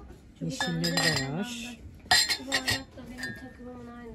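Ceramic mugs clinking against one another as one is lifted out of a box of mugs: a quick cluster of sharp clinks about two seconds in, with a short ring after them.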